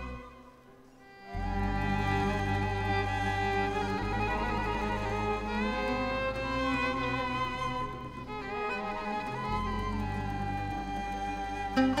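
Violin playing a slow melody of long, sliding notes over a sustained low bass, entering after a nearly quiet first second. Sharp plucked qanun notes come in right at the end.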